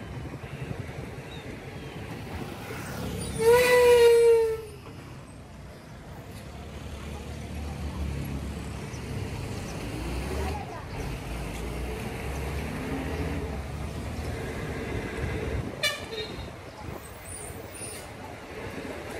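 A vehicle horn honks once for about a second and a half, its pitch sagging slightly at the end. Under it runs the steady low rumble of a vehicle driving along a street.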